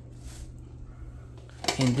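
A low steady hum under quiet room tone, then near the end a thin plastic shopping bag crinkling as a hand digs into it.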